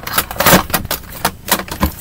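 Makeup palettes clattering and knocking against each other and the sides of a plastic storage drawer as they are put back and rearranged: a quick run of clicks with a longer scrape about half a second in.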